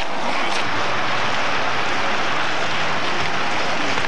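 Steady rushing outdoor noise with no clear pitch, level throughout.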